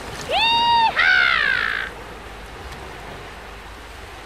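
Two short, high-pitched animal-like calls in quick succession: the first holds a level pitch, the second slides down in pitch.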